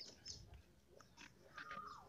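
Near silence in a pause between speech, with a faint short sound holding one pitch near the end.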